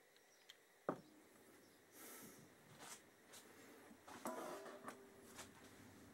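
Near silence in a small workshop, broken by a sharp click about a second in and faint clicks and rustles of parts and tools being handled.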